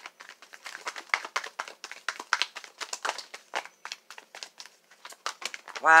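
A deck of tarot cards being shuffled by hand: a dense, irregular run of card flicks, rustles and slaps, with cards flying out of the deck.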